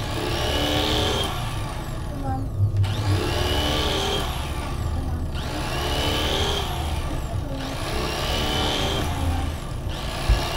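Electric carving knife motor buzzing steadily as it cuts through a rack of smoked pork ribs. Over it, a short spoken phrase repeats about every two and a half seconds.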